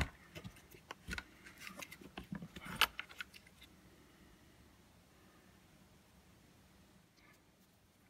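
Sharp plastic clicks and small rattles as a dishwasher sensor and its wire connector are worked loose and pulled out of the pump housing. They come over the first three seconds, with the loudest click at the start and another about three seconds in.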